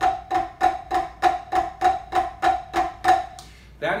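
Drumsticks playing alternating flams on a rubber-topped practice pad: even, sharp strokes about three a second, each with a short pitched knock. The strokes stop near the end.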